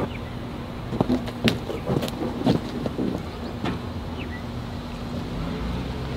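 Scattered light metal clicks and knocks as a truck's hood is unfastened and lifted off its hinges, over a steady low hum.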